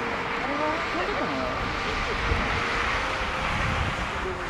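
Distant jet noise from an Airbus A380-841's four Rolls-Royce Trent 900 engines at low thrust while taxiing: a steady rush with a faint steady whine. People's voices are heard over it in the first half.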